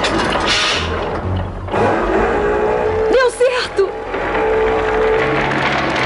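Cartoon soundtrack: dramatic music under noisy action sound effects with a low rumble, and a short wavering cry from a character about three seconds in.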